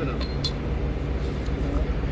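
A few light clinks as hand tools are packed into a cardboard box, over a steady low rumble.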